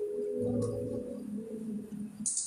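Soft instrumental keyboard music with long held notes.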